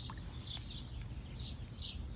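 Birds chirping, a run of short high calls repeated several times, over a low steady rumble.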